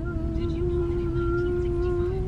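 A voice holding one long sung note, rising slightly at the start, over the low rumble of a car cabin.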